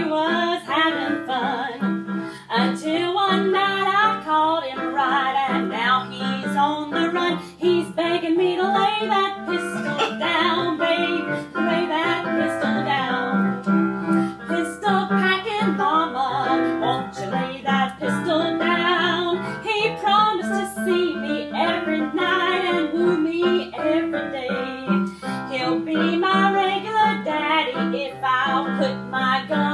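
A woman singing a popular song in a trained voice, accompanied by piano.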